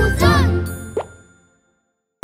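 Children's cartoon song music ends with a short voice glide, then a single cartoon bubble-pop sound effect about a second in, after which the sound fades to silence.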